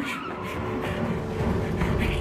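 Movie soundtrack of a car being driven hard: engine running and tyre noise, opening with a sharp click.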